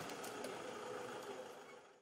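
Faint steady hum of a vehicle engine idling, fading out near the end.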